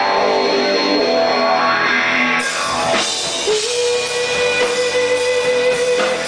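Live rock band playing an instrumental passage: electric guitar over bass and drum kit. A long held note comes in about halfway through.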